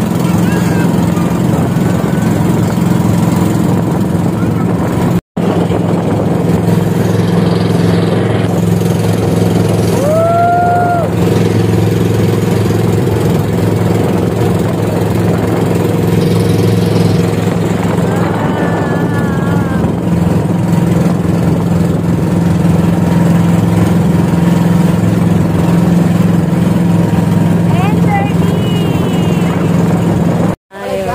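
Outrigger bangka boat's motor running steadily under way, a low drone that holds one pitch throughout. The sound drops out for an instant about five seconds in.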